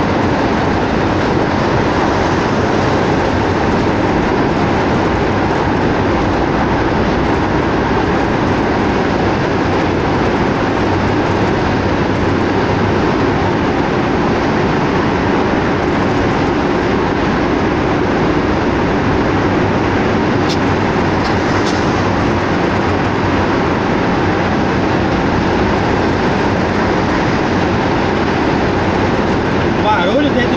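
Steady engine and tyre rumble heard from inside a truck cab at highway speed, driving through a road tunnel.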